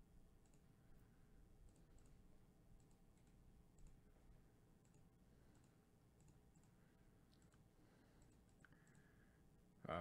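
Near silence: quiet room tone with several faint, scattered computer mouse clicks.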